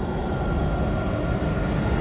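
A loud, steady rumbling noise on the anime's soundtrack, starting abruptly, with a faint high tone running through it.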